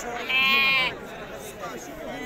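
A sheep bleating once, a loud wavering bleat about half a second long, with market voices behind it.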